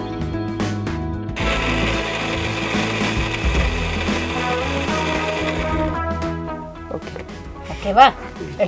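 Electric mixer grinder with a stainless-steel jar running for about four and a half seconds. It starts about a second and a half in and stops about six seconds in, over background music.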